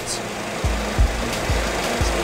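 Steady low hum of cockpit background noise, with a few soft low thumps about half a second apart in the middle.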